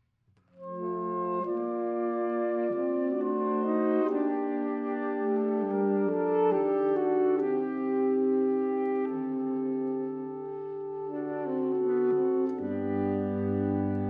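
Saxophone quartet (soprano, alto, tenor and baritone saxophones) entering together about half a second in after a brief silence and playing slow, sustained chords that shift from one to the next. A low baritone saxophone note comes in near the end.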